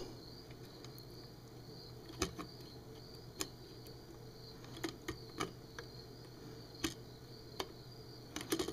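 A few faint, irregular clicks and ticks of a small cutting tool working at a resistor on the circuit board inside a bug zapper racket's plastic handle, metal tips knocking against components and housing. A faint steady hum runs underneath.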